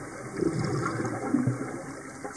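A scuba diver breathing out through a regulator underwater: a rush of exhaled bubbles starts just under half a second in and lasts about a second, over a steady underwater hiss.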